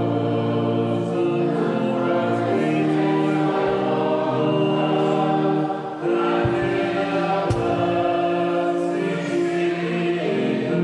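Congregation singing together in church, sustained sung notes with a brief break between phrases about six seconds in.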